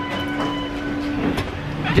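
Fast-food restaurant background noise: a low rumble with a steady electrical hum that stops about a second in, and a brief clatter just after.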